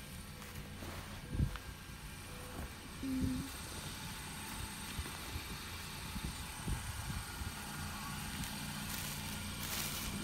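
Hands sorting through clothing, with a thump about a second and a half in, and a plastic garbage bag rustling near the end, over a steady low hum.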